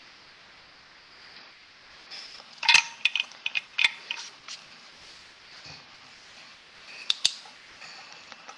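Small hard objects clicking and knocking as fly-tying tools are handled on the bench: a quick cluster of clicks about three seconds in, then two sharp clicks near the end as the UV light is brought up to the fly.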